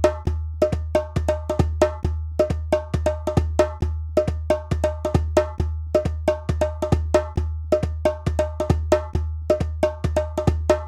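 Hand-drum music: a steady, fast rhythm of short, sharp strikes, about five a second, each with a ringing pitched tone, over a deep bass pulse.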